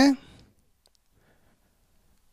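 The end of a man's spoken word, then a pause with a few faint clicks.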